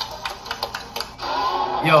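A quick run of sharp clicks, about eight to ten in a second, followed by a man starting to speak.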